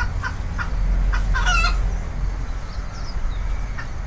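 Market ambience: chickens clucking over a steady low background rumble, with one louder cluck about a second and a half in.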